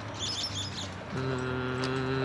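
A small bird chirps briefly, a quick run of high warbling notes near the start. A man then hums a long, steady 'mm', the loudest sound here.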